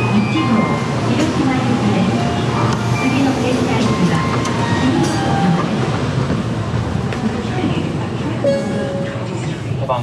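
Bullet-train platform sound: a station arrival melody chiming over a public-address announcement, with the steady hum of the stopped Shinkansen underneath.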